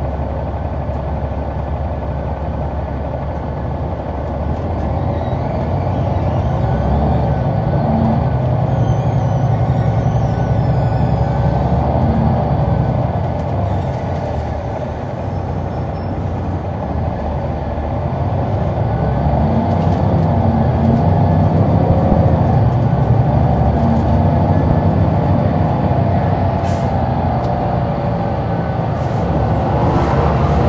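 Caterpillar C9 ACERT six-cylinder diesel of a 2004 Neoplan AN459 articulated bus, heard from inside the bus as it pulls away under power. The engine note climbs twice, easing off for a moment in between.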